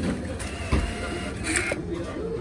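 Banknote acceptor of a meal-ticket vending machine whirring as it draws in a 1,000-yen note, with a short knock partway through.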